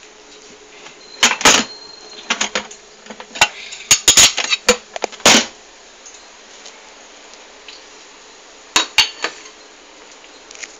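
A white plastic container and kitchenware being handled: a quick run of knocks and clicks in the first half, then two more knocks near the end.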